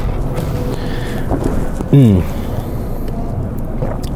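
A man's appreciative "mmm" at a drink he has just tasted, falling in pitch, about two seconds in, over a steady low background noise.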